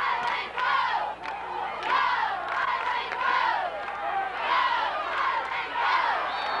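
Stadium crowd in the bleachers shouting and cheering, a run of loud rising-and-falling yells about twice a second.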